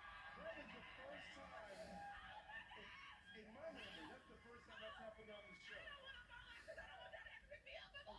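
Faint speech from a television's game-show broadcast, heard through the TV speaker.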